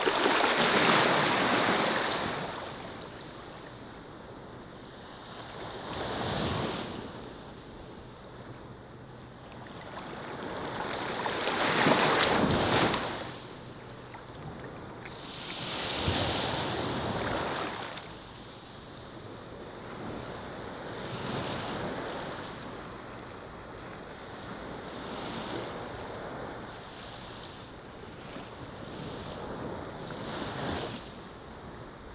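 Ocean surf: waves washing onto a beach in slow swells that rise and fall every four to six seconds, the loudest near the start and about twelve seconds in.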